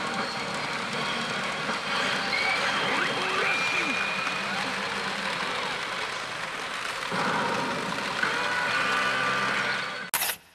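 Pachinko parlor din: a steady wash of noise from many machines and their steel balls, with the electronic sound effects of the pachinko machine in front. Layered electronic tones rise over it near the end.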